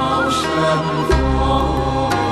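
Buddhist devotional music: a chanted mantra over held keyboard-pad tones and a deep bass note that changes about halfway through.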